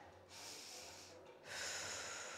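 A woman breathing audibly into a close microphone: two breaths, the second longer and a little louder, starting about a second and a half in.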